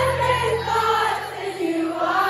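Live pop ballad heard from the audience: a sung melody over a sustained low chord that drops away near the end, with many voices in the crowd singing along.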